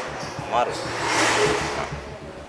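A man's voice saying a short word, followed by a drawn-out breathy hiss.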